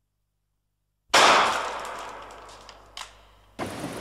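About a second of dead silence, then a single sudden loud bang that dies away gradually over about two seconds, with a small click near the end before the sound cuts off abruptly.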